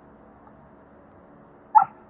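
A single short dog bark near the end, against faint background noise.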